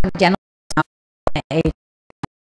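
Speech over a microphone, chopped into short fragments that start and stop abruptly, with dead silence between them, so that no words come through.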